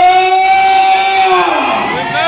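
A raised voice over a microphone and loudspeakers, holding one long high note that falls away near the end, like a sustained cry of praise.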